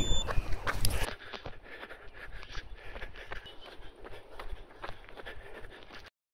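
Running footsteps, a quick patter of light footfalls, after about a second of wind buffeting on the microphone as the run begins.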